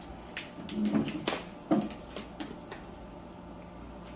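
Handling sounds as a cardboard box of rice is opened and handled: a few short knocks and rustles, the sharpest click just over a second in, then quieter.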